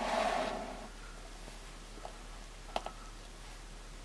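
Faint handling noises: a short rush of noise right at the start, then a few light clicks about two and three seconds in, as a plastic action figure on a metal chain is touched and adjusted.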